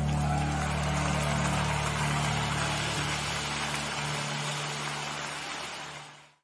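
Worship music at the close of a song: a held low chord under a steady hissing wash, gradually fading out toward the end.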